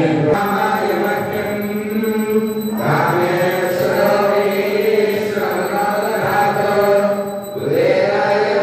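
Hindu devotional chanting: voices intoning a Sanskrit hymn in long, held, sung phrases, with short pauses for breath about three seconds in and again near the end.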